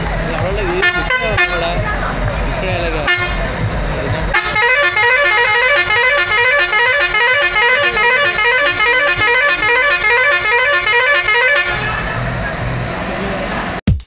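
Tourist bus's musical air horn blaring a fast repeating tune for about seven seconds, after a few short horn blasts over voices.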